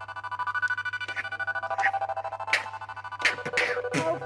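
Live band playing an instrumental passage: a held electronic chord that pulses rapidly, with sharp percussive hits about every half-second to second, coming closer together near the end.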